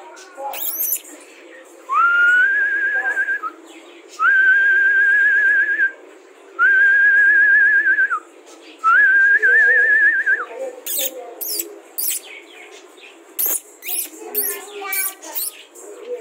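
A person whistling four long, held notes in a row, each sliding up at the start and then holding level with a slight warble before stopping sharply. Scattered clicks and knocks follow in the last few seconds.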